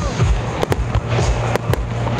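Aerial firework shells bursting with sharp bangs, four or five in quick succession, while music plays underneath.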